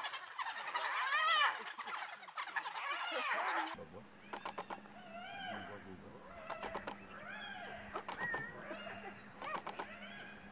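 African wild dogs giving high, bird-like twittering calls that rise and fall in pitch. About four seconds in, the sound cuts abruptly to another recording, where more yelping chirps and clicks sit over a low steady hum.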